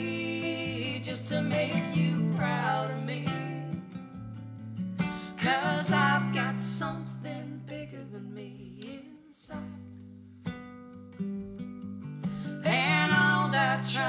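Acoustic guitar strummed in a slow folk-style song, with a man and a woman singing long wordless notes over it. The voices drop out for a few seconds past the middle while the guitar carries on, then come back near the end.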